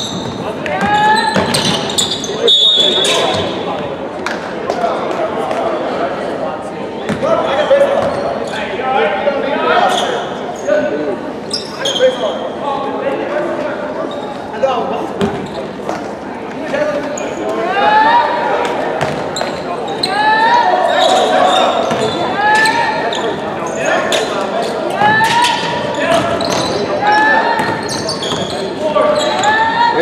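A basketball being dribbled and bounced on a hardwood gym floor, repeated impacts echoing in the large hall, with voices calling out over the play.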